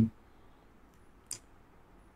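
A single short, light click about a second in, against faint room hiss.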